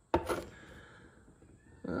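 A short knock with a rustle about a tenth of a second in, dying away within half a second, as a worn rubber drive belt is handled and laid on a wooden workbench; then near quiet.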